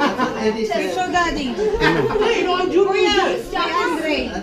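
Several people talking over one another in a room, an indistinct mix of men's, women's and children's voices.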